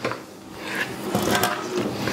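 A kitchen faucet running into a measuring cup, the rushing building up over the first second or so, while a wooden spoon stirs wet dough in a plastic bowl with a few knocks against the bowl.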